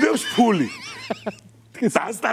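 A man's voiced exclamation falling in pitch, followed by a high, quavering whinny-like call lasting about half a second.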